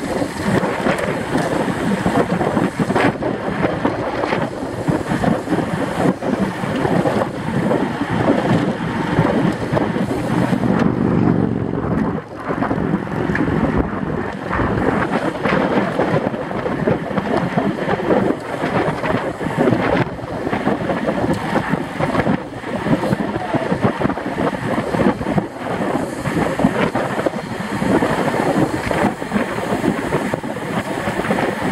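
Wind rushing and buffeting over the microphone of a bicycle-mounted action camera at group-ride speed, a loud, gusty roar with a brief dip about twelve seconds in.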